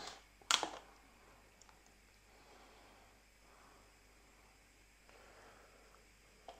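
A single sharp click about half a second in, then faint room tone.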